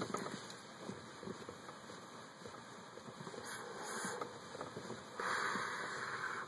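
A man exhaling cigarette smoke, a breathy hiss that starts about five seconds in and lasts just over a second, after a stretch of faint background noise.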